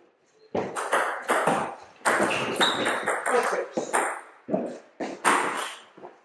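Table tennis rally: the ball clicking off the bats and bouncing on the table in quick succession for about five seconds, then stopping as the point ends.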